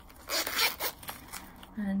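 Zipper on a zip-around purse being pulled open, a longer zip stroke followed by a few short ones.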